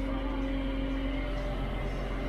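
Steady drone of a self-propelled crop sprayer's engine heard from inside its closed cab.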